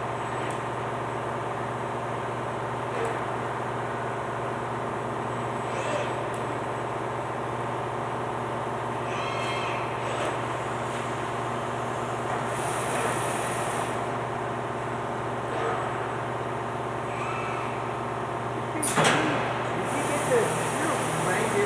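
Industrial painting robot and part shuttle running in a spray booth: a steady machine hum with several steady tones, broken by a few short mechanical sounds and a brief hiss of air partway through, and a sharp knock near the end.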